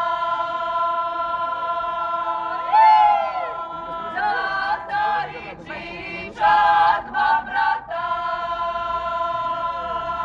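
A choir singing without accompaniment. Long held chords break into shorter phrases in the middle, and one voice sweeps up and down in pitch about three seconds in.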